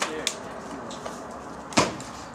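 Sharp wooden knocks of a tool striking the timber framing of a house under demolition. There is one knock at the start, a smaller one just after it, and the loudest one near the end.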